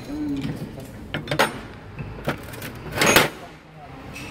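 Metal parts knocking and clinking on a steel tool-cart top, a few separate knocks with the loudest about three seconds in. A brief bit of voice sounds near the start.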